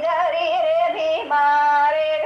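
A woman singing a Banjara folk song, holding long high notes with wavering ornaments and short glides between them, over a lower held tone.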